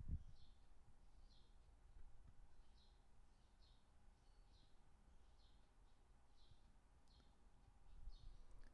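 Near silence: low room hum with faint high bird chirps, a little over one a second.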